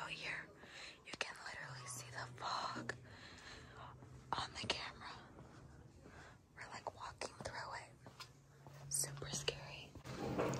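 A person whispering quietly, with a faint low hum that comes and goes in the background.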